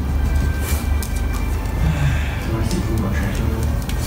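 Background music.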